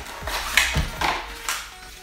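Paper and cardboard packaging crinkled and handled in a string of short rustles and taps, the loudest about a second in, with faint music underneath.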